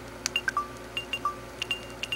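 Mobile phone keypad beeping as a text message is typed: a quick, irregular run of short electronic beeps at two or three different pitches, each with a click.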